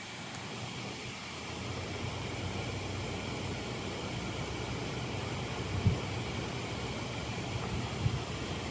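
Steady rush of water, which the speaker takes from the noise for a waterfall, with a low rumble under it and one brief thump about three-quarters of the way through.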